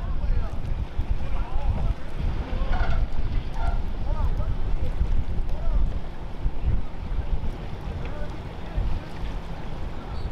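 Wind buffeting the microphone: a loud, steady low rumble. Faint distant voices call out now and then, mostly in the first few seconds.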